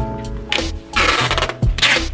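Clear packing tape pulled off a hand-held roll to seal a cardboard box: a long tearing pull about a second in and a shorter one near the end, over background music with a steady beat.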